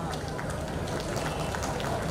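Scattered hand-clapping over a steady crowd hubbub.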